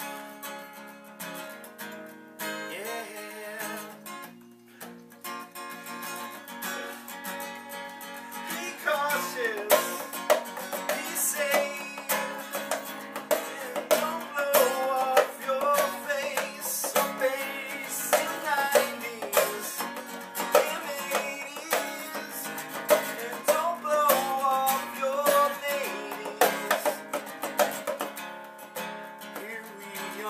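Acoustic guitar strumming a steady accompaniment. About nine seconds in, a brass horn joins with a melody over it.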